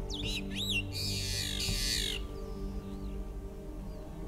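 Long-tailed meadowlark singing: a few quick swooping whistled notes, then a harsh buzzy phrase that ends about two seconds in. Background music plays throughout.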